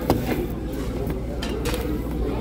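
Restaurant dining-room chatter: a steady murmur of voices from nearby tables, with a sharp click just after the start and a few fainter clicks in the second half.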